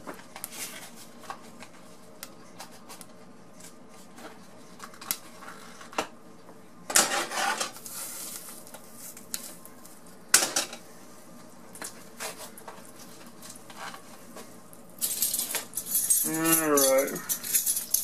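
Kitchen handling noise from a stainless steel saucepan on an electric coil burner: scattered light clicks and knocks of metal, a longer scraping rustle about seven seconds in, a sharp knock about ten seconds in, and denser rustling and clatter over the last few seconds. A brief mumble of voice comes near the end.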